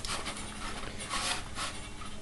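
Faint soft rustling and handling noise as a hand grips and turns a stiff, resin-coated paper armour piece.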